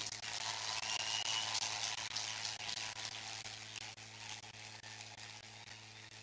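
A steady hiss that slowly fades, over a low steady hum.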